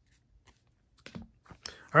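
Trading cards being handled and set down on a tabletop: a few soft, short clicks and taps, mostly in the second half. A word of speech starts at the very end.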